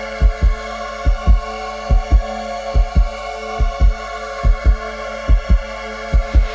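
Horror-film score: a deep heartbeat sound effect, double thumps about seven times in six seconds, over a steady held drone of several sustained tones.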